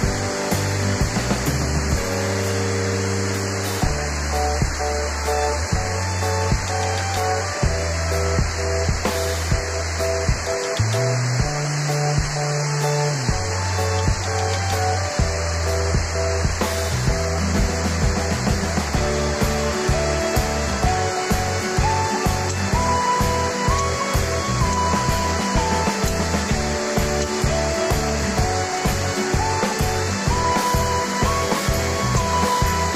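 Background music with slow, held bass notes, a melody coming in during the second half, over a steady rushing hiss of heavy rain.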